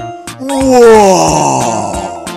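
Cartoon sound effect of a voice-like moan falling in pitch for about a second and a half, over bouncy children's music with a steady beat.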